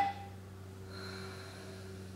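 The ringing tail of a struck meditation instrument, marking the start of a sitting, dies away within the first half-second. A steady low hum with faint high tones follows.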